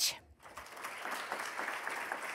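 Audience applauding, starting about half a second in and settling to a steady clapping.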